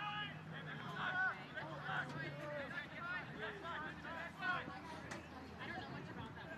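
Distant voices calling out and chattering around a soccer pitch, faint and overlapping. A faint steady low hum runs under the first half.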